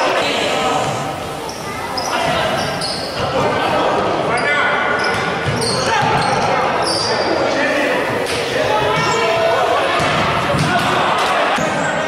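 Futsal being played on a wooden court in a large echoing hall: the ball is kicked and bounces with repeated thuds, while players' shoes squeak briefly and often on the floor and players call out.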